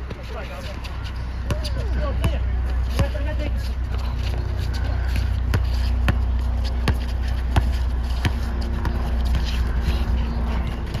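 A basketball being dribbled on an outdoor hard court, a sharp bounce about every three-quarters of a second from about three seconds in, over a steady low rumble and faint voices.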